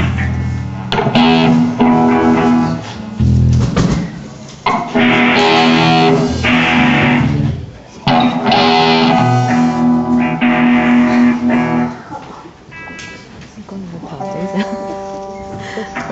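Amplified electric guitar chords strummed and left ringing in several long, loud stretches with short breaks between them, with bass underneath. It drops to quieter single held notes in the last few seconds.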